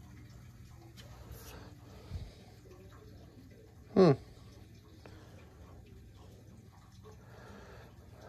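Faint, steady low hum of a hydronic circulator pump running on the boiler. It is not yet moving hot water through the zone, with a lot of air trapped in the piping. A man's short 'Hmm' about halfway through.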